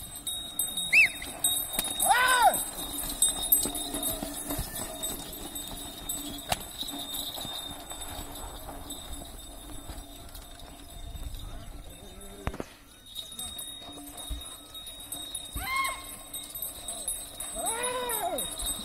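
Yoked bulls' hooves pounding on a dirt track as they drag a stone block, with a few sharp rising-and-falling shouts from the men driving them on.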